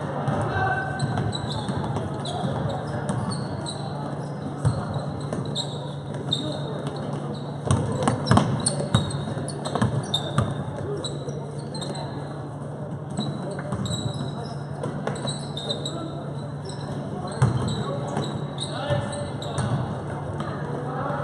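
Basketball bouncing on a hardwood gym floor during play, with a cluster of sharp bounces about eight to ten seconds in and another near the end, amid short sneaker squeaks and spectators' chatter echoing in the gym over a steady low hum.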